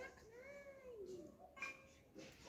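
A faint, drawn-out animal cry, about a second long, that rises and then falls in pitch.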